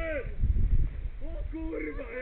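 People's voices calling out without clear words, outdoors by a river. About half a second in there is a loud low rumble, and near the end more voices.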